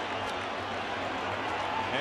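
Baseball stadium crowd noise, a steady hubbub of many voices.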